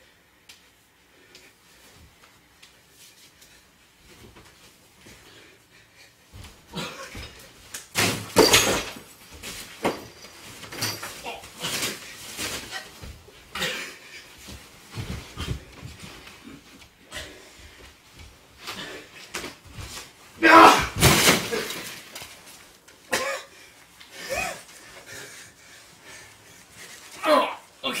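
Two men wrestling on a carpeted floor: scuffling and shuffling with heavy thuds of bodies landing. It starts quietly, with loud thuds about eight seconds in and the loudest around twenty-one seconds in.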